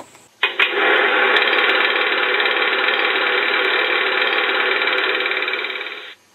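A motor running steadily and loudly, starting suddenly about half a second in and stopping abruptly at the end.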